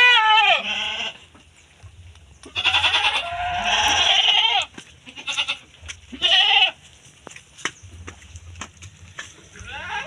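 Goats bleating: a call in the first second, a longer drawn-out bleat a few seconds in, and a short bleat a little after the middle.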